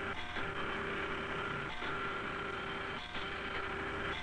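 Computer chart plotter running as its print head marks dots across the paper: a steady mechanical hum, broken by a short knock three times, about every second and a half.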